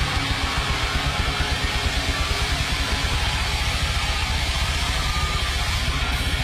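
Death metal band playing live: distorted electric guitars over a fast, steady barrage of kick-drum beats, many to the second, with no vocal line.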